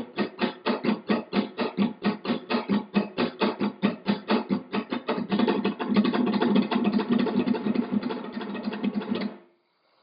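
Flamenco guitar rasgueo: the fingers of the strumming hand flick out one after another across the nylon strings in a continuous roll of rapid strokes, about five or six a second. This is the abanico chico style of rasgueo, played here without the little finger. The strokes crowd closer together about halfway through, then stop abruptly near the end.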